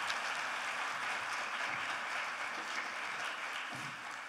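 Audience applauding, a steady spread of many hands clapping that begins to taper off near the end.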